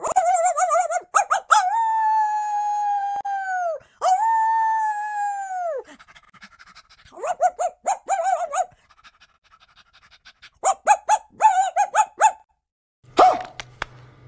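A girl's high voice howling like a dog in a tuneless, wavering 'song'. A fast warbling cry opens it, then come two long held howls of about two seconds each that sag in pitch at the end, then two runs of short rapid yelps.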